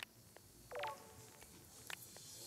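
Faint handling of the metal graver-holding fixture of a sharpening system: a few light clicks and one brief ringing tone a little under a second in.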